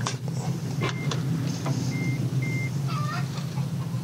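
An EV charging connector clicking home into a Nissan Leaf's nose charge port, then short high beeps from the car as charging starts, over a steady low hum.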